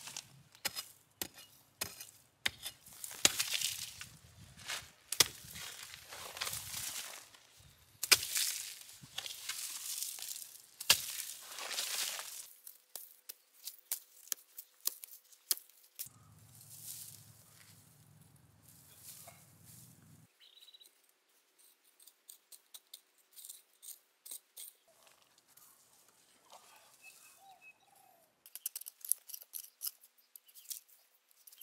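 Black plastic around a shrub's root ball crinkling and tearing as gloved hands work it, with rustling soil and sharp knocks, busiest in the first half. Later, a hoe chops and scrapes in dry soil, with sparser clicks.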